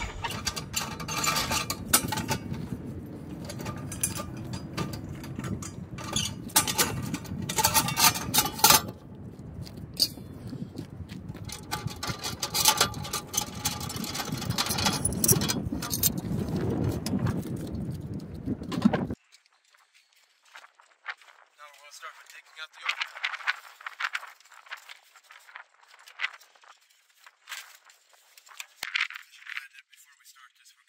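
Propane tanks being disconnected and lifted off a travel trailer's tongue: repeated metal clinks, jingles and scrapes from the tank valves, regulator fittings and hold-down, over a low rumble. About two-thirds of the way through, the sound drops abruptly to a much quieter, thinner background with scattered faint clicks.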